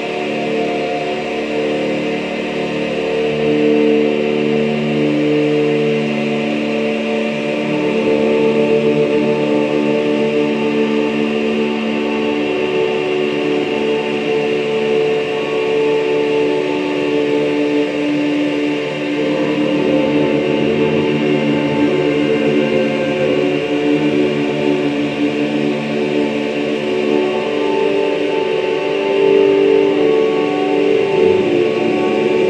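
Live electronic drone music: several sustained tones layered on top of each other, their pitches shifting slowly, at a steady loud level.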